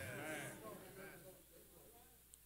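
A faint voice with wavering pitch, fading to near silence after about a second and a half.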